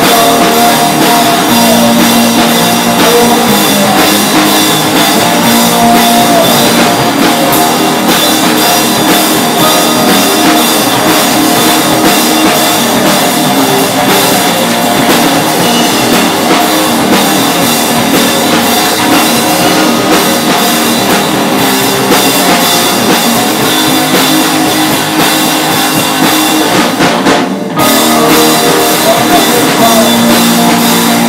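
Live rock band playing loud: electric guitars over a drum kit. The sound drops out briefly near the end, then the band comes straight back in.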